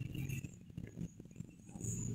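Marker pen writing on a whiteboard: faint taps and scratches of the pen strokes over a low steady hum.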